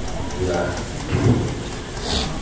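A man's voice through a handheld microphone and loudspeaker, broken and reverberant in a room, over a steady hiss-like background noise.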